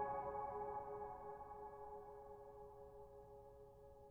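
Solo piano chord ringing on and slowly fading almost to silence, several notes held together with no new notes struck.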